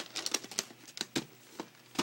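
Plastic VHS clamshell case and cassette being handled: a run of irregular sharp clicks and taps, about eight in two seconds.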